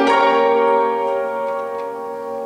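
A piano chord struck loudly, then held and left to ring, slowly fading.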